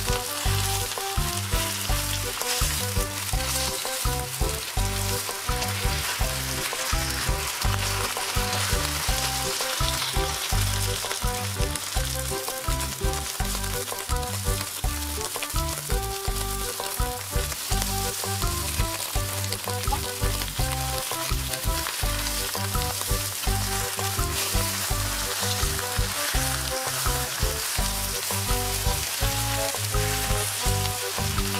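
Cabbage leaves sizzling in hot oil in a non-stick wok, stirred and tossed with a wooden spatula. Steady background music plays underneath.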